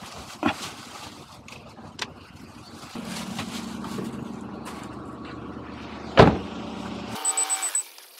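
Getting out of a parked Suzuki car: scattered clicks and handling noises, then a steady low hum from about three seconds in. A loud sharp knock about six seconds in, and near the end the hum cuts off and a short run of rapid beeps follows.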